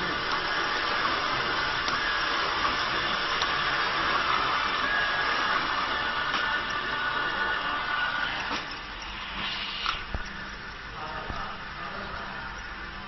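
Automatic flat-bottle labeling machine running: a steady mechanical whir from its conveyor and labeling head. It drops off about two-thirds of the way through, leaving a quieter stretch with a few light clicks.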